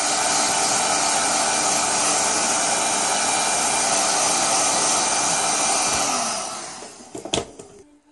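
Electric heat gun blowing steadily while it shrinks black heat-shrink tubing onto the end of a headphone cable. Its sound dies away about six seconds in, and there is a sharp click shortly after.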